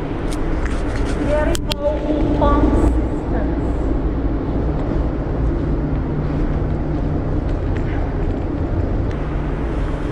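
A steady low mechanical hum with several fixed low pitches fills a large, hard-walled hall. About one to three seconds in, indistinct voices and a few sharp clicks sound over it.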